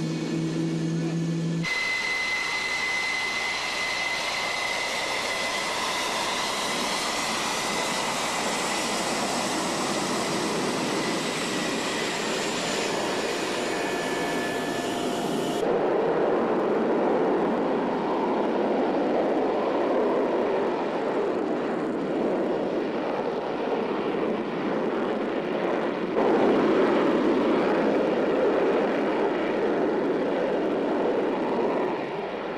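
Jet engines of F-4G Phantom II Wild Weasels (General Electric J79 turbojets): a whine with steady high tones over a rushing noise. About halfway through, a cut leads to deeper jet noise, which steps up louder near the end as an F-4G on the runway runs up for takeoff.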